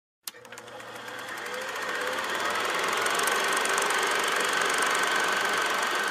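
Film projector running with a rapid, steady mechanical clatter. It starts with a click and swells in over the first two seconds, with a faint high whine under the clatter.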